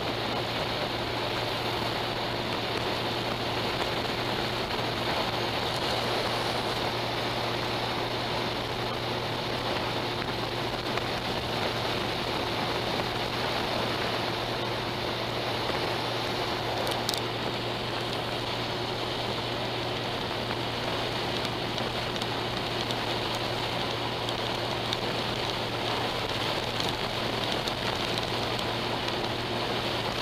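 Honda Gold Wing motorcycle cruising at steady highway speed: constant wind rush over the windscreen with a steady low engine and road hum underneath.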